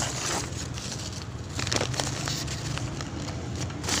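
Rustling and handling noise with a few sharp clicks as things are picked up close to the microphone, over a steady low background hum.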